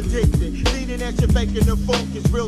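Boom bap hip hop track: a rapper's voice over a drum beat and a steady bass line.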